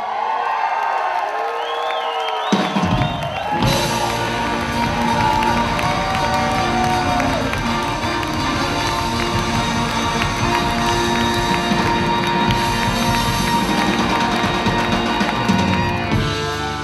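Live rock band with a horn section (saxophone, trumpet, trombone), drums and electric guitar playing, with audience cheering mixed in. The first couple of seconds hold only high gliding notes without bass, then the full band with drums comes in about two and a half seconds in and plays on at a steady level.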